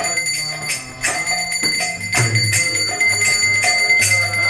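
Kirtan music: a bell rung continuously and hand cymbals struck about three times a second, over held melodic notes and low drum beats.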